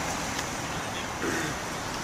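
Steady background rumble and hiss, with a faint voice briefly about a second in.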